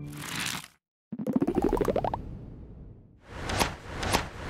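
Sound effects of an animated logo sting. A short whoosh, then a fast run of pops that climbs in pitch for about a second, and another whoosh swelling up near the end.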